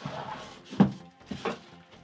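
Cardboard and plastic packaging being handled inside a shipping box: a few short knocks and rustles, the sharpest just under a second in.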